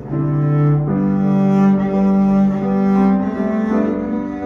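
Double bass played arco, drawing long held notes of a slow melody that moves from note to note about once a second, with piano accompaniment underneath.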